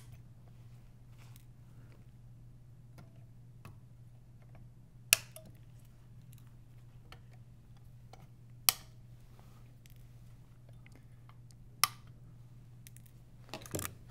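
Side cutters snipping the excess capacitor leads off the back of a freshly soldered circuit board: sharp snips a few seconds apart, with faint handling clicks between them.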